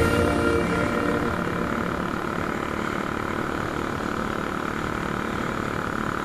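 Steady rushing wind and engine drone heard from a moving motorcycle, with background music fading out in the first second.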